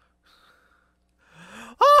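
Near silence for over a second, then a man draws a sharp gasping breath that rises into a loud laughing "oh" near the end.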